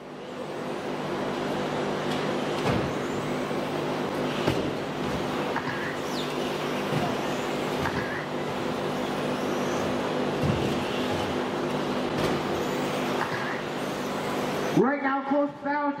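Electric RC off-road race cars running around an indoor track: a steady mix of motor whine and tyre noise over a low hum, with several short knocks along the way. The sound cuts off suddenly near the end.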